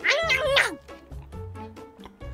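A short, high meow, about two-thirds of a second long, at the start, its pitch dropping at the end; faint background music follows.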